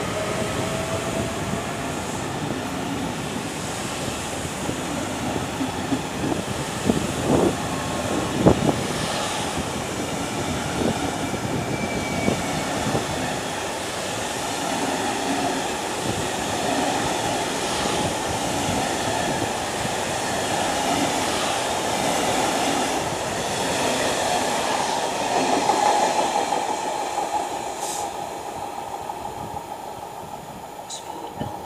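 Passenger train of I11 coaches rolling past close by, a steady rumble of wheels on rail. There is a wheel squeal at the start and a few sharp clacks about seven to nine seconds in. The sound fades near the end.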